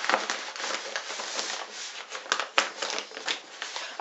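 Paper wrapping being handled and pulled open by hand, rustling with many short crackles.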